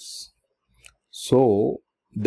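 A man speaking, with a short pause that holds one faint click just before the middle.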